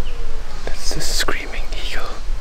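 People whispering close to the microphone.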